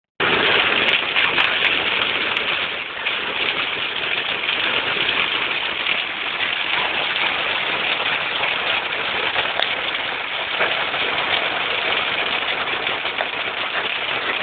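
Hail hitting a car's roof and windshield, heard from inside the cabin as a dense, steady patter.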